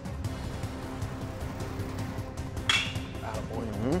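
A baseball bat meeting a pitched ball: one sharp impact with a short ringing, about two and a half seconds in, over steady background music. It is solid contact, a line drive tracked at about 80 mph off the bat.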